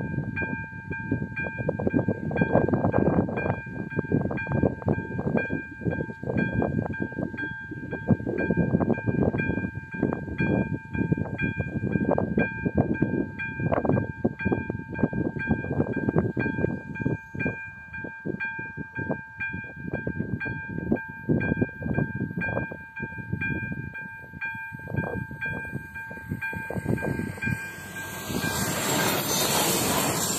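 A level-crossing warning signal's electronic bell rings in a steady, evenly repeated rhythm over wind buffeting the microphone. From about 27 seconds in, a diesel railcar is heard approaching and reaching the crossing, its noise swelling over the bell.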